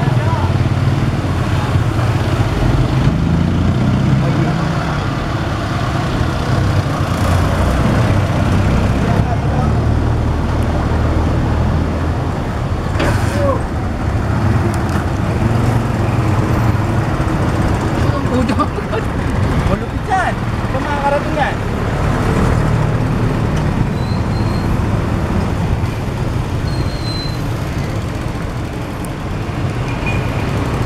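Street traffic of motorcycles and motorized tricycles (motorcycles with sidecars), their small engines running in a steady low drone, with voices in the background.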